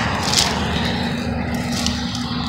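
Steady rush of road traffic on a nearby dual carriageway, with a low hum running through it. A couple of brief crackles, about half a second in and near the end, as the plastic wheel trim is dragged through dry bramble stems.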